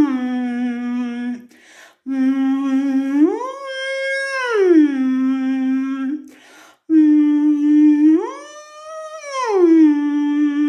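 A man humming with closed lips on a 'mm' in the chewed-M vocal exercise. He sings a low note, slides up to a higher note, holds it and slides back down, twice, with short gaps between the phrases.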